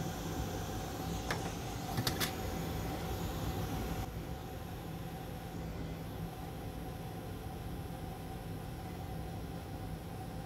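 Steady fan hum and airflow hiss of a bench fume extractor at a soldering station, with a few light clicks in the first two seconds. The high hiss drops a little about four seconds in.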